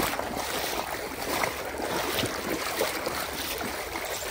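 Bare feet splashing and sloshing through shallow muddy water, several wading steps in irregular succession.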